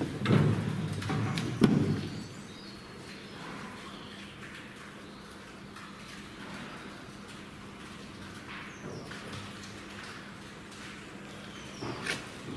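A few thumps and rustles in the first two seconds, then a quiet cattle-shed background with a faint steady hum and occasional faint bird chirps.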